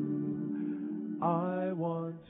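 A vocal group singing a long held note, with a new sung phrase starting a little past the middle.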